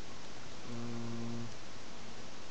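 A person's short closed-mouth hum, a low 'mm' held at one steady pitch for under a second, starting about two-thirds of a second in, over constant microphone hiss.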